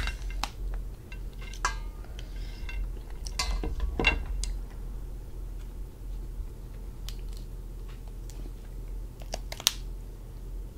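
Cooked lobster shell being broken apart by hand at the claw: scattered sharp cracks and clicks, the loudest about four seconds in and just before the end.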